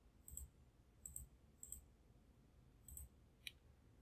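Faint computer mouse clicks, about five, spaced unevenly, as server roles are ticked and Next is clicked in a setup wizard.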